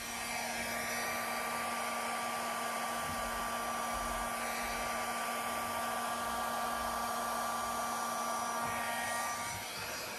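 Handheld blow dryer running steadily with a motor whine, its air blown across wet pour paint to push the bloom out into petals. It eases off briefly near the end.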